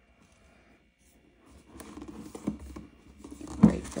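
Hands handling and turning over a cardboard box, with light rustles and taps of cardboard, starting a little over a second in.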